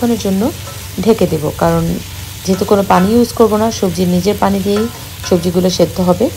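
Vegetables stir-frying in a wok, sizzling as a wooden spatula stirs them. A louder voice comes and goes over the sizzle in short phrases with some held notes.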